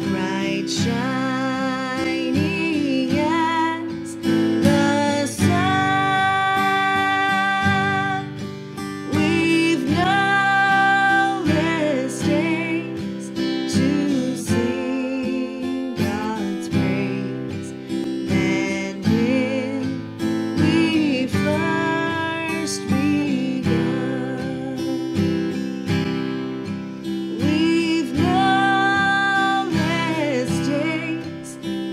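A woman singing a slow song in long held notes with a slight waver, accompanied by a strummed acoustic guitar.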